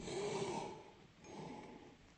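A rock climber's strained breathing while hanging on a hard move: a sudden forceful breath out, about a second long, then a weaker breath near the middle.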